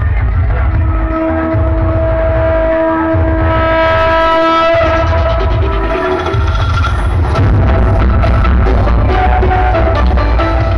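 Loud music from a large DJ speaker rig with heavy bass: a long held note rides over the bass for the first half. About five seconds in the sound briefly drops, and then a pulsing bass beat comes back in.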